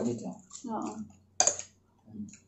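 Close-miked table eating sounds: brief murmured voice and mouth noise, then one sharp click about a second and a half in, the loudest sound.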